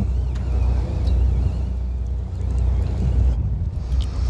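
Steady low rumble of a fishing boat's engine running at idle, with wind noise on the microphone.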